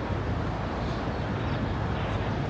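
Steady city street ambience: a low, constant rumble of traffic with an even wash of background noise and no distinct events.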